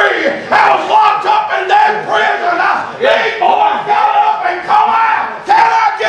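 A man preaching in a loud, chanted sing-song shout: high-pitched held phrases of half a second to a second each, broken by quick breaths, too drawn-out for a speech recogniser to make out as words.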